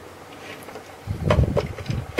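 Hard plastic toy parts being handled, with a few sharp clicks from about a second in as the gun pegs are pushed into the tank's ports, over a low handling rumble.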